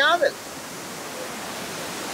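Steady rush of a small waterfall, an even hiss that builds slightly, after a brief spoken word at the start.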